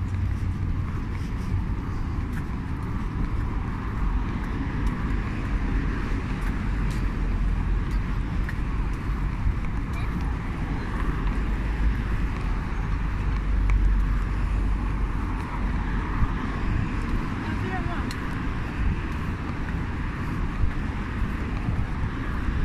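Steady city street noise: road traffic with a low rumble, heard while walking along a sidewalk.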